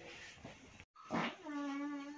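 A person's voice, quiet: a brief sound about a second in, then a drawn-out whine held on one pitch for most of a second.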